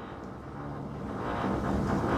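Low, even background noise of road traffic, slowly growing louder.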